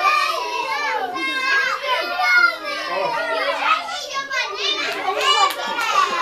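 A room full of children talking and calling out over one another: a continuous, excited, high-pitched chatter.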